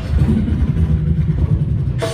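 Beatboxer making a low, rumbling engine-like sound into a cupped microphone, amplified through a concert hall's sound system.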